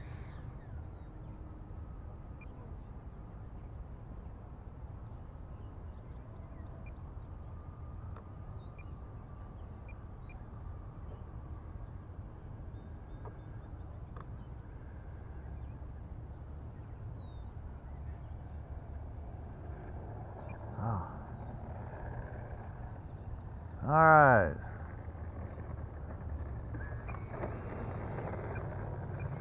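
Steady low rumble of a radio-controlled model jet rolling out and taxiing on an asphalt runway just after landing, with a faint thin whine over it. A man's voice calls out once, loudly, near the end.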